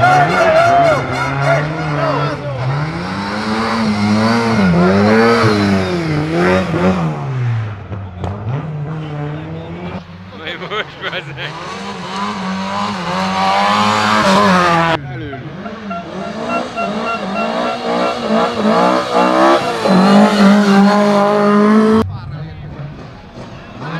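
Rally car engines, a Lada saloon among them, revving hard up and down through gear changes as the cars drive past, with abrupt breaks between passes.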